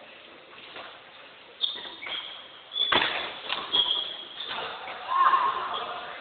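Badminton rally: sneakers squeaking in short sharp chirps on the court floor and rackets hitting the shuttlecock, with one sharp smack about halfway through that is the loudest sound.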